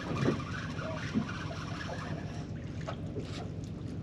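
Steady wind and water noise around a small boat, with a few faint clicks from a spinning reel being cranked in against a hooked fish.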